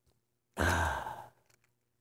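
A person sighing: one breathy exhale close to the microphone, starting about half a second in and fading out within a second.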